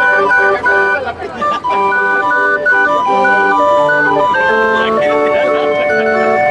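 A Mexican street barrel organ (organillo) playing a tune in sustained, steady organ notes, with people's voices heard over it about a second in.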